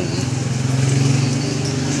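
A small engine running with a steady low drone, loudest about halfway through.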